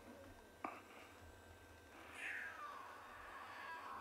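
Lion cub giving one faint, high distress call that falls in pitch, starting about two seconds in: a call of desperation to its mother. A single sharp click comes shortly after the start.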